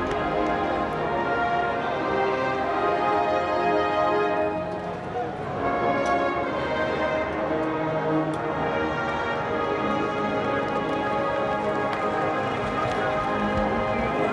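Many voices singing together over instrumental music: the team's alma mater, sung by the players with arms raised toward the stands.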